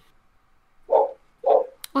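Two short vocal sounds from a person, about half a second apart, after a brief hush, then a small click just before talk resumes.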